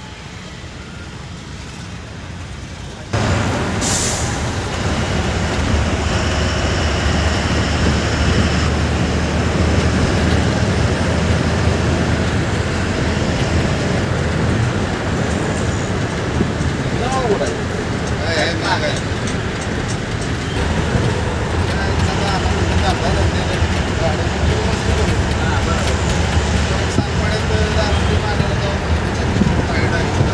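Coach engine rumbling low and steady with road noise, heard from inside the moving bus. It is quieter for the first three seconds, then suddenly louder, and a short sharp hiss like an air-brake release comes about four seconds in.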